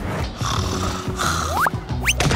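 Cartoon-style sound effects over background music: a hissing whoosh, then a short rising whistle-like glide near the end.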